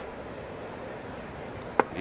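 Steady ballpark crowd noise, then near the end a single sharp pop as the pitch smacks into the catcher's mitt on a swinging strikeout.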